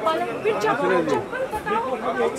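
Speech: people talking, with chatter from several voices.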